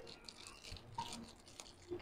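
Faint handling noise: light clicks and scratchy rustles as a small decorative incense holder is turned over in the hands.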